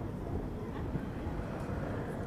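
Steady low rumble of ambient background noise, a field-recording-like texture with no melody or beat, playing out as the song's outro.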